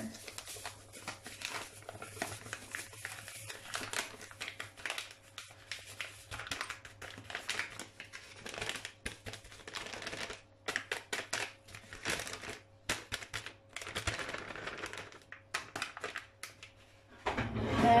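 Paper flour bag crinkling and rustling in the hands as flour is shaken out of it into a glass bowl: a run of irregular crackles that dies away shortly before the end.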